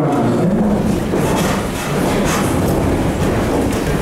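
A man's voice breaks off about half a second in, giving way to a steady rustle and clatter of an audience in a large room as people move about and shift seats.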